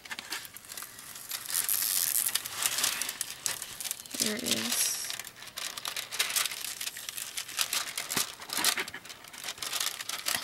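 Clear plastic cover film on a diamond painting canvas crinkling and crackling as hands lift it and peel it back from the canvas's sticky poured-glue surface. A short vocal hum is heard about four seconds in.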